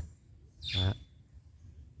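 A single short spoken word, overlapped a little under a second in by a brief high bird chirp.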